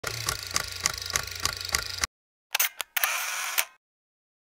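Camera sound effects over an animated logo: about two seconds of rhythmic clicking, roughly three to four clicks a second over a steady tone, cutting off suddenly. After a short pause come two sharp clicks and a shorter mechanical rush of noise that fades out.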